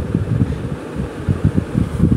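Spiced pineapple pieces sizzling in foaming melted butter in a frying pan, with irregular low rumbles like wind or handling on the microphone.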